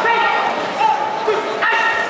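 Several people shouting in a large echoing sports hall, with a sharp high-pitched shout starting near the end.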